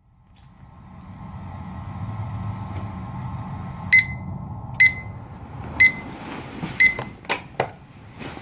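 Digital alarm clock beeping four times, about once a second, with short high beeps over a low rumble that swells in from silence; a few sharp clicks follow near the end.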